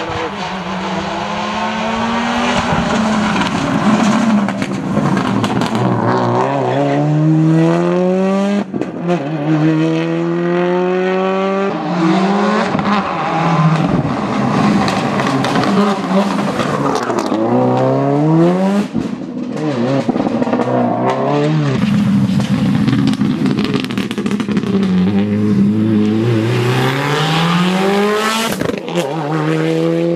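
Subaru Legacy rally car's flat-four engine at full throttle, climbing in pitch through each gear and dropping back at every upshift. Over several separate drive-bys it lifts off and revs again.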